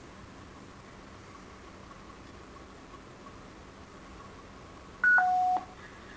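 Barrett 4050 HF transceiver sitting quietly between transmissions with a faint steady background hum. About five seconds in it gives a short, loud two-tone beep: a high tone stepping down to a lower one, about half a second in all.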